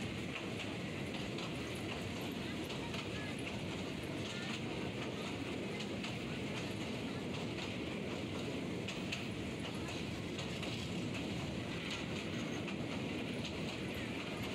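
Passenger train running steadily across a steel truss railway bridge, heard from inside the carriage by an open window: a continuous rumble with faint scattered clicks.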